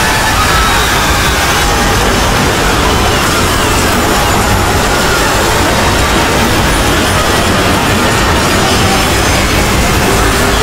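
Dozens of cartoon soundtracks playing at the same time, their music, sound effects and voices merged into a dense, steady wash of noise with no single sound standing out.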